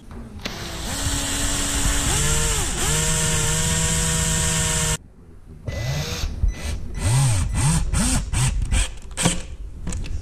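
Cordless drill boring a pilot hole into the side of a plywood box, its motor whining steadily for about four seconds with two dips in pitch, then stopping abruptly. After that a cordless drill drives a wood screw in a string of short trigger bursts, each rising and falling in pitch.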